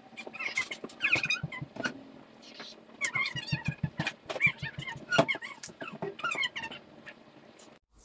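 Hands scooping the wet pulp and seeds out of a hollow pumpkin: irregular squelches, scrapes and clicks, with short high squeaks of skin and flesh rubbing inside the shell.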